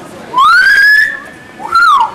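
A very loud two-part wolf whistle by a person: a rising note held for about half a second, then a shorter note that rises and falls.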